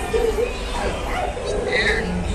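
A dog yipping and whimpering in short pitched calls, amid recorded voices and a steady low hum.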